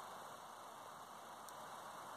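Faint steady hiss: room tone.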